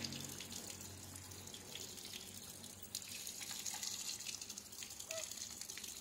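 Water trickling and dripping down through a wire birdcage, a faint steady splashing with small drip ticks.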